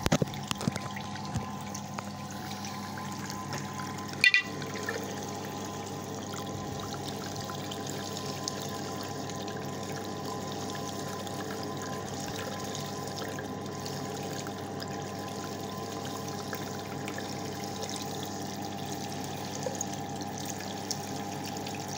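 Tap water running steadily over a forearm and splashing into a sink basin, with one brief sharp knock about four seconds in.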